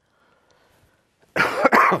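An elderly man coughing into his fist, a sharp double cough a little past halfway through after a near-silent pause.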